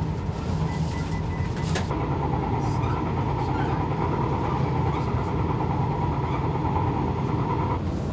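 Running noise of the Twilight Express sleeper train heard inside its dining car: a steady low rumble, with a steady high whine from about two seconds in until near the end.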